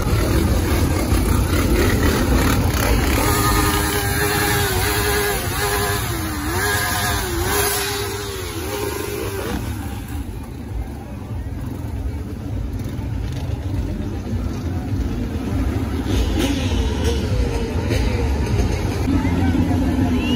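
ATV and motorcycle engines running among a crowd, with a constant low rumble and crowd voices. Engine pitch rises and falls several times in the first half.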